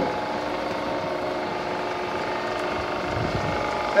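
A 7.5 kW three-phase induction motor belt-driving a custom permanent-magnet alternator at about 600 rpm, running steadily with an even hum and whine.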